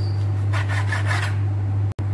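Kitchen knife slicing through raw chicken breast on a wooden cutting board: a few rasping, scraping strokes about half a second in, over a steady low hum.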